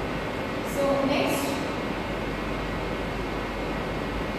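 Steady room noise, an even hiss with a low hum, with a short spoken fragment in a woman's voice about a second in.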